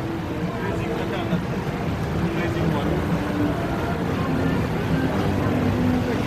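Steady outdoor city-street ambience: a constant traffic hum with faint, distant voices of passers-by.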